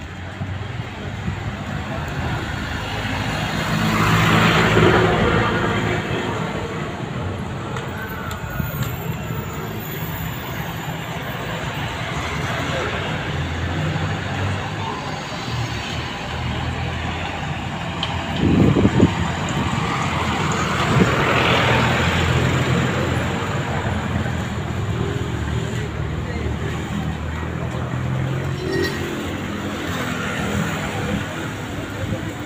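Busy street-market ambience: many people's voices over steady traffic noise, with two louder swells of passing traffic, about four seconds in and again around twenty seconds in, and a brief loud knock just before the second.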